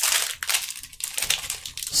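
Foil Magic: The Gathering booster-pack wrapper crinkling and crackling in the hands as it is worked open, with many quick irregular crackles.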